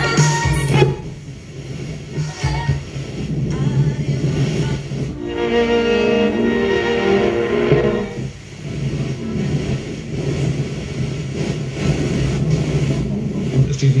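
Telefunken Opus 2430 tube radio playing a broadcast through its speakers, cutting between snatches of music and voices as it is tuned across stations; a short clear stretch of music sits in the middle.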